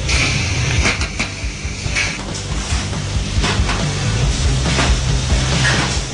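Automatic pudding cup filling and sealing machine running with mechanical clatter and scattered knocks, under background music. A hiss comes in the first couple of seconds.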